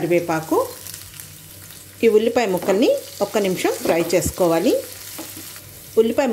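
Onion and green chillies sizzling in hot oil in a nonstick pan as they are stirred. A voice, louder than the frying, talks over it in two stretches, near the start and through the middle.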